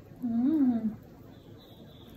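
A young child's voice: one drawn-out syllable that rises and then falls in pitch, lasting under a second.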